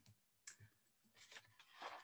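Near silence in a small room, broken by a few faint short clicks.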